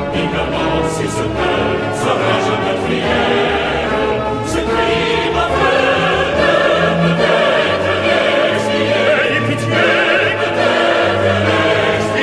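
Opera: a chorus singing with orchestra, continuous and full throughout.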